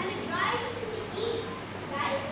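Young people's voices speaking on stage, the words indistinct, over a steady low electrical hum.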